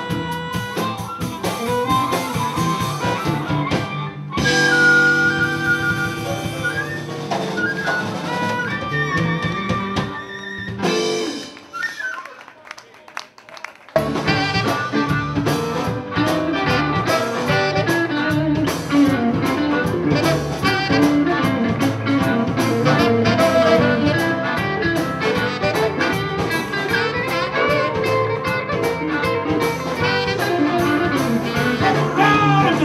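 Live blues band ending a song on a long held final chord, then a few seconds' lull before the band starts the next number, a blues shuffle with drums, guitar and saxophone, about halfway through.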